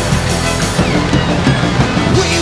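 Rock band playing an instrumental passage live: electric guitar, bass guitar and drum kit, with a violin, at a loud, steady level.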